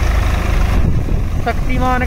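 Swaraj 855 tractor's three-cylinder diesel engine running steadily with a low, even rumble as it pulls a rotary rake through straw. A man's voice starts speaking near the end.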